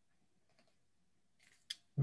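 Near silence over a video call, then a short breath-like rustle and one sharp click near the end, just before a voice starts speaking.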